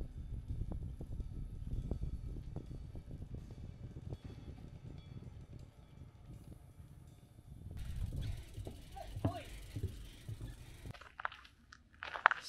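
Low wind rumble on the microphone and rolling noise of a bicycle on a paved path, with frequent small knocks. A brief spoken "oh" comes about nine seconds in, and the riding noise stops about a second before the end.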